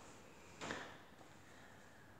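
Near silence: room tone, with one short soft noise about two-thirds of a second in.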